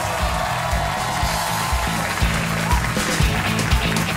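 Talk-show break music with a steady bass line and drum beat, over studio audience applause.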